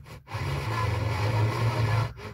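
Car FM radio stepping up one channel during a band scan: the audio cuts out for a moment as the tuner retunes, then comes back as a rough, noisy hiss from a frequency with no clearly received station.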